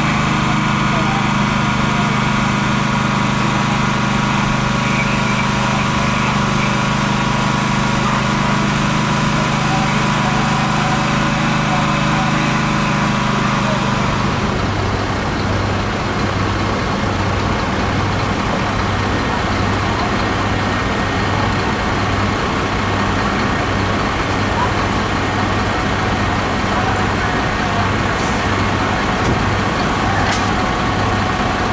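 Diesel engines of parked fire trucks idling with a steady low hum. About halfway through it changes to another truck's engine with a regular low throb, about one beat a second.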